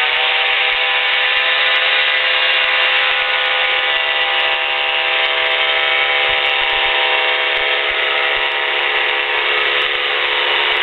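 Weight-shift trike's engine and propeller running steadily at low power while the trike holds a low approach just above the runway, heard thin and tinny through the cockpit intercom.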